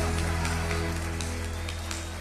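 A live sertanejo band's closing chord ringing out over a deep bass note and slowly fading as the song ends.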